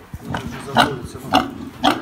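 Pigs grunting in a farrowing pen: three short, loud grunts about half a second apart.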